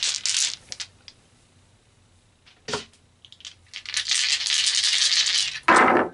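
Tarot dice rattling inside a cloth pouch as it is shaken, in two bouts with a few clicks between, the second ending in a louder clatter near the end.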